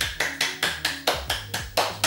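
Rapid hand clapping, about ten quick claps at roughly five a second, over background music.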